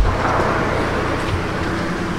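A single knock at the very start, then a steady low hum and hiss of outdoor background noise.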